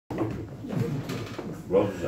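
Low, indistinct male voice talking throughout, then a clearer spoken word near the end.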